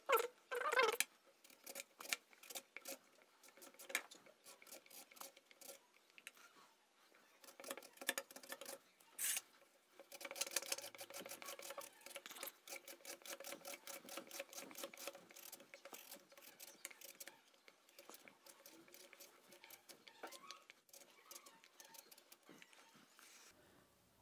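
Potato being slid back and forth over a wooden mandoline slicer, cutting thin slices. It is faint: a long run of short scrapes and clicks, quickest and most even in the second half.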